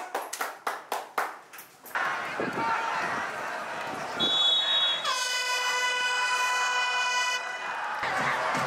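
A handful of hand claps over the first two seconds, fading out. Then stadium crowd noise, a short high whistle tone, and a horn blast held for about two seconds.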